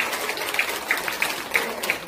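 A small audience applauding by hand, with several sharp individual claps standing out from the steady clapping.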